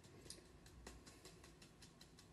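Faint, quick tapping on a handheld mesh sieve as almond flour is sifted through it, a few light clicks a second.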